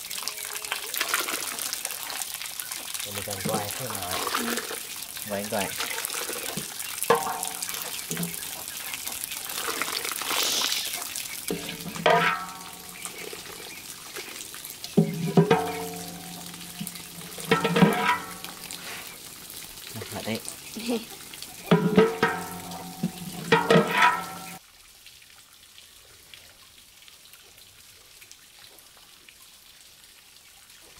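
Wet splashing and trickling of soybean curds and whey in a cloth-lined wooden tofu mold, a steady watery hiss for about the first ten seconds. It is followed by several short loud bursts of a person's voice.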